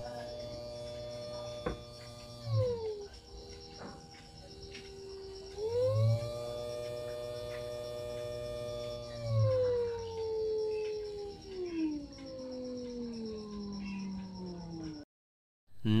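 Small 12 V DC motor running with a whine whose pitch follows its speed as the supply is adjusted by a potentiometer. It drops about two and a half seconds in, climbs back about six seconds in, then sinks slowly over the later seconds before cutting off suddenly near the end.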